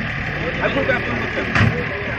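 An engine running steadily under crowd chatter, with a brief knock about one and a half seconds in.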